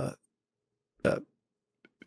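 A man's brief throaty vocal sound, a short grunt-like 'uh', about a second in, in a pause between words; otherwise near silence.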